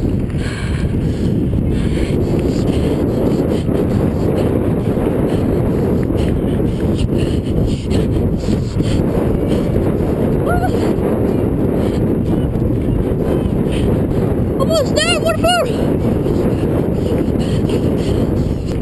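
Wind buffeting the microphone: a steady, loud low rumble throughout. A brief run of high, pitched calls comes about fifteen seconds in.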